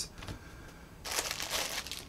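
Plastic packaging bag crinkling as a bagged accessory is lifted out of its box, starting about a second in and lasting about a second.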